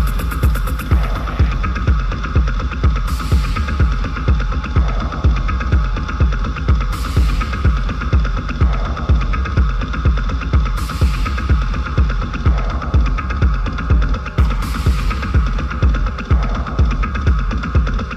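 Deep hypnotic techno: a steady kick drum about twice a second under a held droning tone, with a hissing sweep of high noise coming in about every four seconds.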